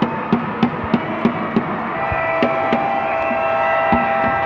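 A steady drum beat, about three strokes a second. About halfway through, held pitched tones join it and it becomes music.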